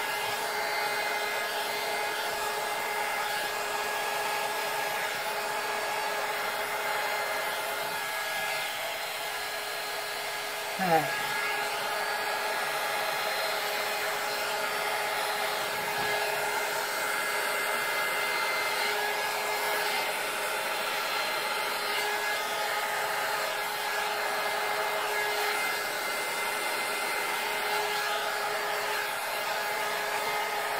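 Handheld heat gun running steadily, a blowing hiss with a motor whine, aimed over wet epoxy resin to push the white pigment into frothy wave lacing.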